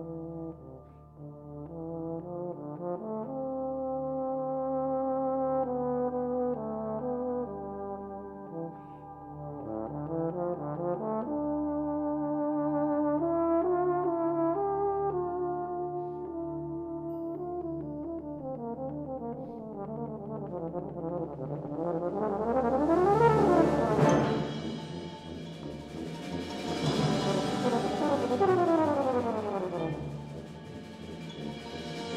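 Military brass band music: sustained brass chords that build to two loud swells near the end, with sweeping rising and falling runs.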